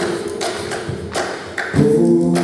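Thumps and taps keeping a steady beat, about two a second, in a gap between sung chords, as percussion in a folk arrangement. Voices come back in with a held chord near the end.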